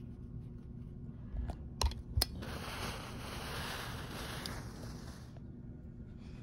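Clothes iron pressing cotton binding fabric: a few light clicks, then an even hiss lasting about three seconds.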